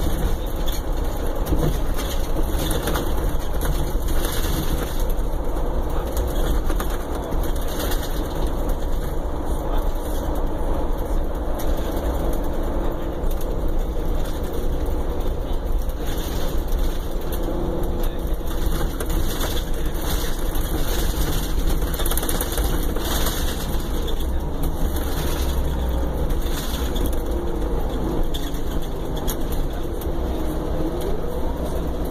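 Steady diesel engine and road noise heard from inside the passenger cabin of a 2015 Prevost coach bus, deep and constant.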